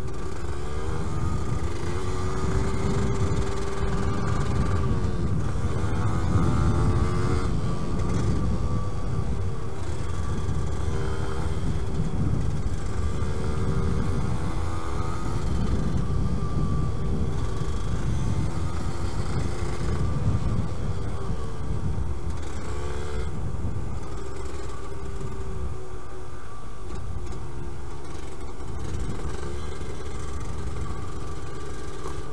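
Yamaha DT125LC YPVS two-stroke single-cylinder engine running as the bike is ridden, its pitch rising and falling repeatedly with the throttle. Under it is a low rumble of wind and tyres on gravel.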